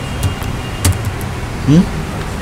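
A few scattered clicks of computer keyboard keys as code is typed, over a steady low hum. A short murmur of the voice comes near the end.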